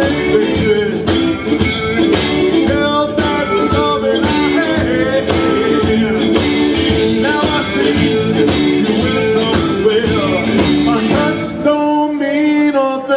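Live band playing: a male singer over drum kit, electric bass and keyboard, with a steady drum beat throughout.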